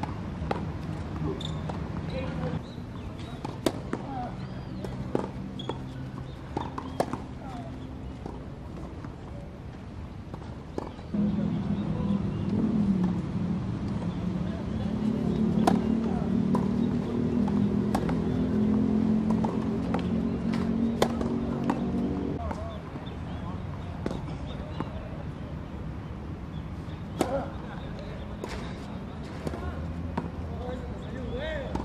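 Tennis ball being struck back and forth in a rally, sharp racket hits about one to two seconds apart, over a steady low hum that grows louder for about ten seconds in the middle.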